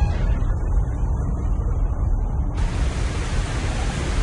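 A loud, steady rushing noise over a deep rumble, with no tone or rhythm in it: a sound effect. It grows brighter and fuller about two-thirds of the way in.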